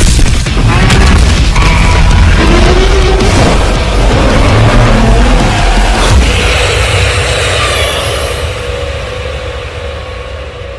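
Heavy action-soundtrack music mixed with booms and sharp impacts, with a heavy low rumble. A loud hit comes about six seconds in, and then the whole mix fades down toward the end.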